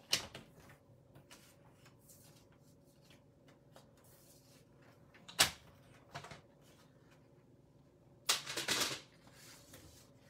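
Paper trimmer and cardstock being handled: light scattered clicks and taps, one sharp click about halfway through, and a short rustle of paper near the end.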